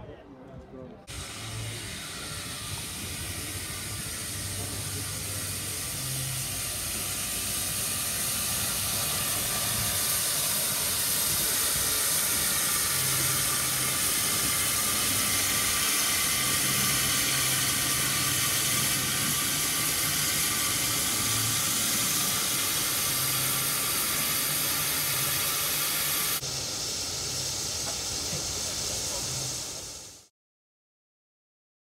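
Steam hissing loudly and steadily from a Beyer Peacock narrow-gauge steam tank locomotive. The hiss starts about a second in and drops off sharply a few seconds before the end, leaving a softer hiss that fades out.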